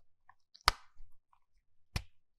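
Rubber squishy toys being handled over a metal muffin tin, with two sharp clicks about a second and a quarter apart and faint soft handling noises between them.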